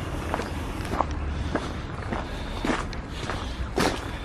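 Footsteps on a gravel path at a steady walking pace, about one step every half second, the last step near the end the loudest.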